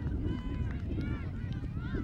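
Distant shouts and calls from players and spectators on the open fields, several voices overlapping, over a steady low rumble.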